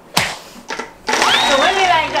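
A tabletop prize wheel is pushed into a spin by hand with a sharp smack. About a second in, a dense whirring rattle starts, with high gliding vocal tones over it.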